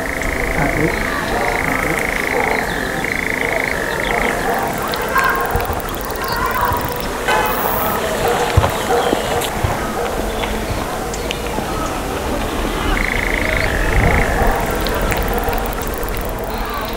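Live modular synthesizer electronic music: a dense, glitchy texture of clicks and short chattering blips. A high steady tone cuts in and out in short blocks over the first four seconds and again near the end.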